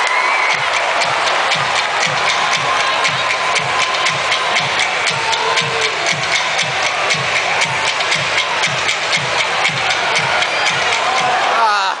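Arena crowd noise with music over the public-address system playing a steady beat, about two beats a second, which stops shortly before the end.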